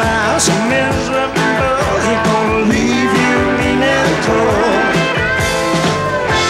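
Southern rock band playing an instrumental break: electric lead guitar bending notes over bass and drums.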